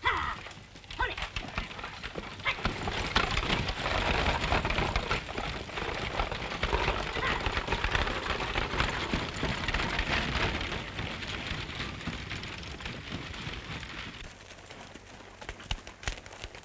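A team of horses galloping while pulling a stagecoach: a dense rush of hoofbeats that swells over the first few seconds and fades away near the end, after a brief shout right at the start.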